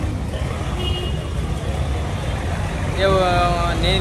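Steady low outdoor background rumble. A man's voice comes in about three seconds in.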